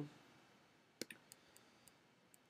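A few faint computer mouse clicks against near silence: one sharper click about a second in, then three or four softer ones over the next second.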